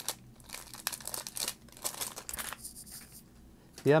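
Plastic wrapper of a trading-card pack crinkling and tearing as it is pulled open by hand, a quick run of crackles for about two and a half seconds, then quieter rustling as the cards are slid out.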